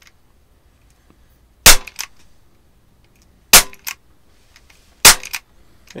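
Umarex Beretta 92 CO2 BB pistol (.177) firing three single shots, a second and a half to two seconds apart. Each shot is a short, sharp crack followed by a fainter tick.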